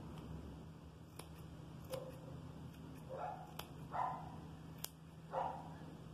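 Scissors snipping yarn while a pompom is trimmed, a handful of short sharp snips. A dog barks three short times, about three, four and five and a half seconds in; these barks are the loudest sounds.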